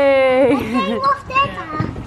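A young child's long, held excited shout that ends about half a second in, followed by shorter wavering excited vocal sounds.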